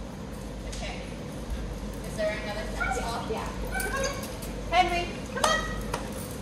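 Indistinct voices talking in short phrases, with no clear words.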